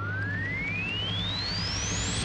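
Produced segment-intro sound effect: a steady low drone under a single pure tone that sweeps smoothly upward in pitch.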